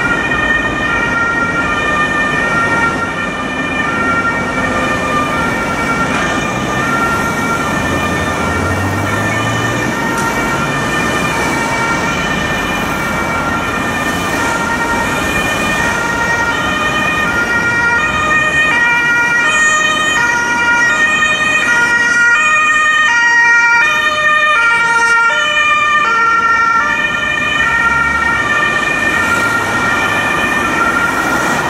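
German ambulance two-tone siren (Martinshorn, compressed-air) sounding its alternating high-low call over city traffic noise, growing louder in the second half as the ambulance draws closer.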